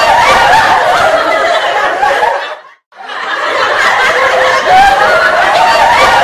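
Recorded laughter, a group of people chuckling and laughing together, laid over the end credits. It fades out about two and a half seconds in, drops out briefly, and fades back in.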